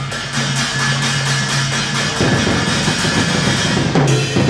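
Drum kit played in a rapid, loud, dense run of drum and cymbal hits. A low steady tone sounds under the hits and stops about two seconds in.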